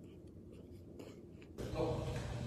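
Faint chewing of a mouthful of raw apple, with a few soft mouth clicks. Near the end the sound cuts abruptly to louder, steady room noise with a low hum.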